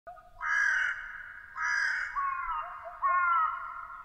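A bird calling four times, each call short and falling slightly in pitch, with short pauses between.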